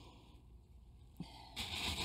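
Glazed ceramic pot being set down onto pea gravel in a plastic saucer: a light knock about a second in, then a brief gritty scrape as the pot settles on the stones near the end.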